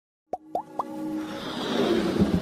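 Animated logo-intro sound effects: three quick pops in the first second, each sliding up in pitch, then a swell of hiss with a low held tone building up.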